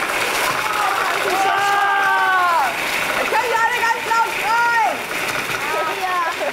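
A hand blender with a chopper attachment running steadily, its motor chopping dried apricots, prunes and cranberries. Children's high voices call out over it several times.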